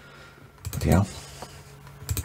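A few light clicks of computer keyboard keys being tapped, over a faint steady hum.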